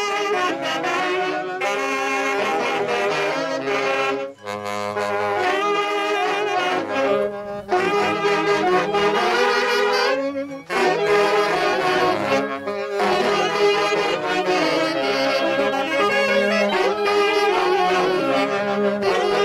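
A band of saxophones and clarinets playing a lively tune together in unison, with two short breaks in the music about four and ten seconds in.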